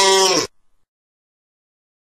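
A voice drawing out the last syllable of a question in a held, wavering tone, stopping about half a second in; then dead silence.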